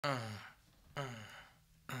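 A man's voice making three short "uh"/"mm" grunts that fall in pitch, evenly spaced about a second apart, marking the beat as a count-in.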